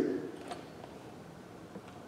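Quiet room with a couple of faint clicks as a hand rummages in a small plastic pail and draws out a balloon; the tail of a man's speech is heard at the very start.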